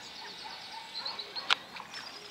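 Songbirds singing, a quick trill of short high notes followed by scattered chirps, with one sharp click about one and a half seconds in.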